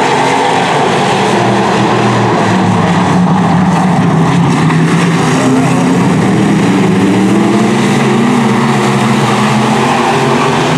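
Several dirt-track stock car V8 engines racing at once, loud and steady, their overlapping engine notes rising and falling as the cars run through the turns.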